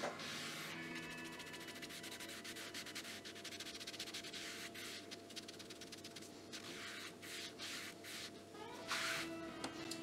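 Cotton pad scrubbing quickly back and forth over the foil of an electrostatic speaker panel, faint and continuous, wiping the conductive coating off with acid to etch a dividing line into the panel.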